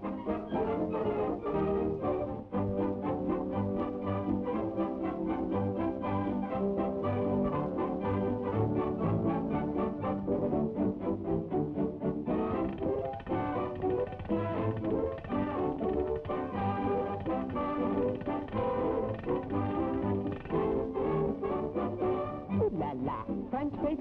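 Old-time cartoon orchestra playing an instrumental passage with brass, with a steady beat throughout.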